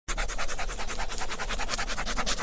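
Marker pen writing, rapid scratchy strokes across paper at about a dozen a second as lettering is drawn out.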